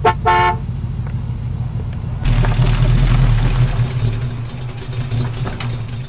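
A car engine running with a steady low rumble, a short double horn toot right at the start. About two seconds in the engine gets louder, then the sound cuts off suddenly.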